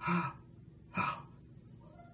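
A man's sharp pained gasps, two of them about a second apart, as he acts out the pain of a razor cut while shaving.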